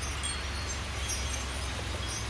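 Steady outdoor background: an even hiss and a low hum, with faint scattered high tinkles.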